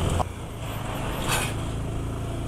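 Motorcycle engine running steadily while riding, heard from the bike's onboard camera with road and wind noise, and a brief hiss about halfway.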